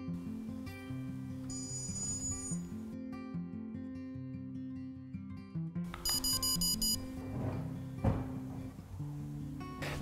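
Soft solo acoustic guitar music with electronic beeps from a Skytech fireplace remote receiver: a short series of beeps about a second and a half in as its learn button is pressed, then a louder burst of rapid beeps about six seconds in as the remote's ON signal is received and the new code is learned.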